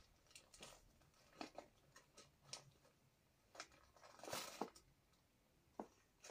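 Faint, scattered rustles and small clicks of paper and seed packets being handled, with a slightly longer rustle about four seconds in.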